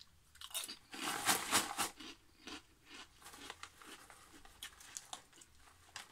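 A person biting into and chewing a crisp fried potato snack (Jalapeño Grills), with dense crunching in the first two seconds. Fainter, scattered crunches of chewing follow.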